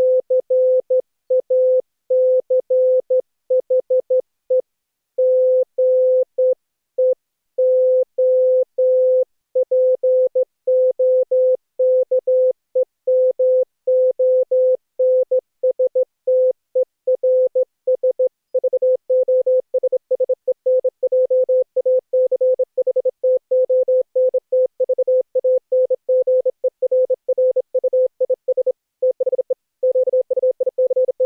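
Morse code: a single steady beep keyed on and off in dots and dashes, with the keying quicker in the second half.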